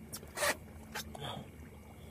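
A few short rustling scrapes: handling noise from the angler's jacket and hands as he shifts his grip on a large leerfish, over a faint steady hum.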